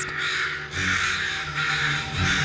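A flock of American crows cawing harshly in alarm, long rough calls overlapping one another: the birds are scolding and mobbing a threat, a person holding a dead crow.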